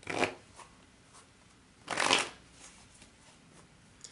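Tarot cards being shuffled: two short riffling bursts, one at the start and another about two seconds in.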